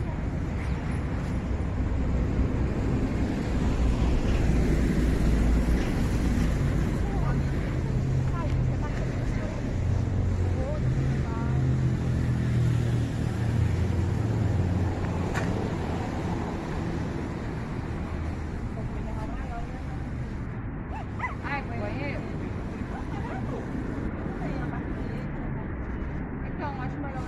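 Low, steady rumble of street traffic, heavier through the first half, with indistinct voices talking.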